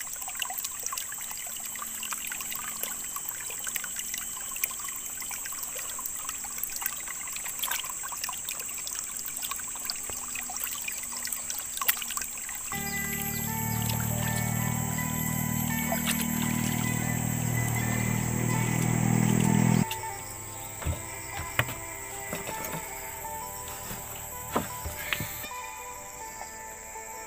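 Shallow stream water trickling and splashing as hands rinse wild mushrooms and then a plate in it, with music playing over it. About two-thirds of the way through, a louder steady sound takes over for several seconds and then cuts off abruptly.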